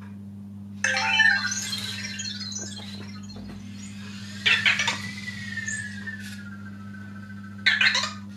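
Anki Vector robot making its electronic chirps and warbling beeps in answer to a command, once about a second in and again about four and a half seconds in. The second burst trails into a long high whine that glides slowly lower as it drives off to its charger, and a short chirp comes near the end.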